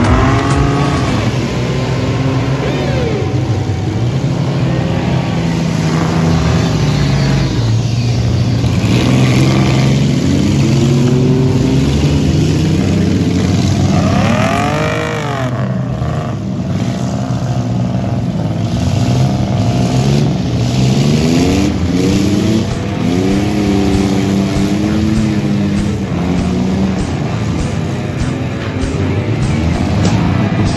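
Engines of several battered demolition-derby minivans and vans racing around a dirt figure-8 track, revving up and down as they accelerate and back off. One car's engine rises and falls sharply in pitch about halfway through.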